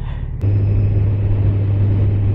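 2023 Kawasaki Z900's 948cc inline-four engine running at a steady cruise, with wind and road noise. About half a second in, a click and a sudden change bring a louder, steady low engine hum.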